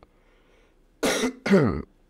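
A man coughing twice in quick succession, starting about a second in; the second cough ends with a falling voiced tail.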